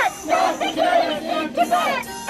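Protest chant: a woman shouting slogans through a megaphone, with the crowd's voices chanting along in short shouted phrases.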